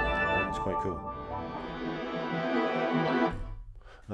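Sampled piano melody from the Obscure Grand sample set, played back in a software sampler, with sustained, smeared notes that sound as if already reversed. It fades out a little past three seconds in.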